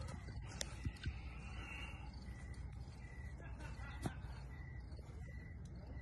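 Faint night-time outdoor ambience with a small animal's short, high chirp repeating roughly twice a second, and a few soft clicks.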